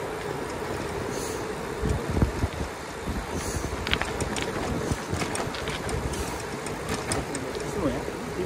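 Wind rushing over the microphone and tyre noise on rough, patched asphalt from an e-bike coasting fast downhill. There are a few low bumps about two seconds in and scattered light clicks and rattles in the second half.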